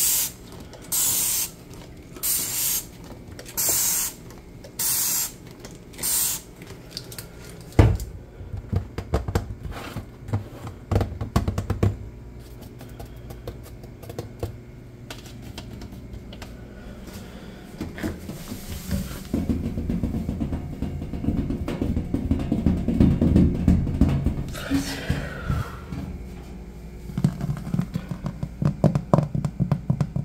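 An aerosol can of foam sprayed in about six short hissing bursts, roughly a second apart. Then fingertips tap and scratch on a metal baking sheet: scattered sharp taps, a denser stretch of rubbing and tapping, and quick runs of taps near the end.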